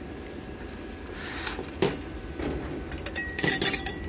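Silicon wafer clinking against a quartz wafer boat as it is set into its slot: a sharp click just before two seconds in and a cluster of light clinks near the end, over a steady low hum.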